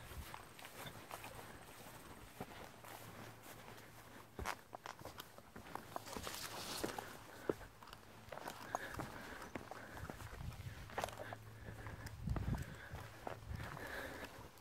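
A hiker's footsteps on a rocky trail through brush: faint, irregular steps with scuffs and crunches.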